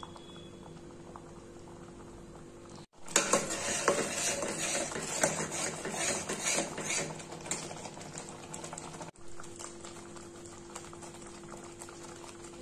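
A steel spoon stirring thick, simmering curry gravy in a stainless-steel pan: a louder run of scraping and wet bubbling from about three seconds in to about nine seconds. Before and after it, only a low steady hum.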